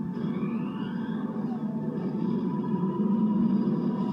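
Film trailer music playing from a desktop computer's speakers, with a rising sweep about a second in.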